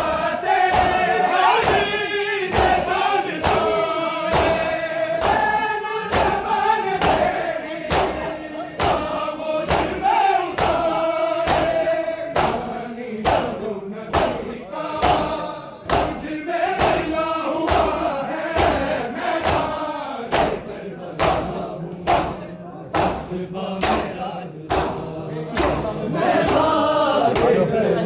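A crowd of men chanting a Shia noha in unison while beating their chests in matam, the open-hand slaps landing together in a steady rhythm of about two a second.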